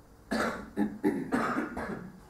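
A person coughing several times in quick succession, a short fit of about five coughs.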